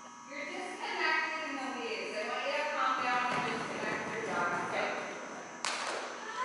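Indistinct voices talking, with a short sharp noise near the end.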